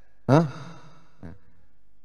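A man's single short questioning "hah?" into a handheld microphone, falling in pitch, followed by a pause with only faint background hum.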